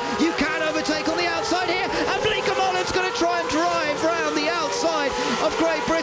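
Open-wheel race cars' V8 engines running at racing speed as two cars go side by side through a corner, their engine notes rising slowly, with voices over the top.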